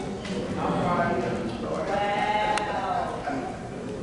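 A man's voice speaking into a microphone, stretching one vowel into a long held, wavering sound in the middle of the stretch.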